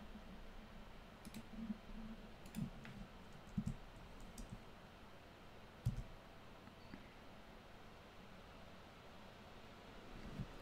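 Keyboard keys clicking softly and irregularly as a password is typed at a sudo prompt: about half a dozen separate keystrokes over the first six seconds, the one near six seconds the sharpest, with one more about a second later.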